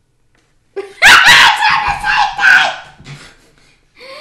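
A Nerf Rival Roundhouse XX-1500 blaster fires about a second in, a sharp shot, followed by about two seconds of loud yelps and laughter.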